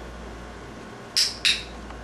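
A dog-training clicker clicking twice in quick succession, about a third of a second apart, each a short sharp click. It is the press and release of the clicker, marking the puppy's down before a food reward.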